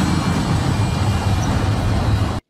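Film sound effect of an automated face-washing contraption running: a loud, steady hiss of spraying water over a low mechanical rumble.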